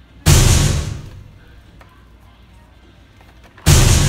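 Two loud, sudden booms about three and a half seconds apart, each dying away over most of a second.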